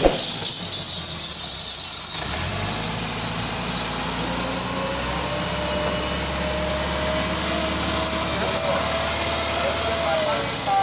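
Massey Ferguson 385 tractor's diesel engine running under load, hauling a loaded trolley over loose dirt, with a steady low drone. The sound changes abruptly about two seconds in.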